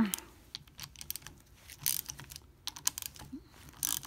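Scattered light metal clicks of a wrench working the cover bolts loose on a Mercedes-Benz 190SL steering gearbox.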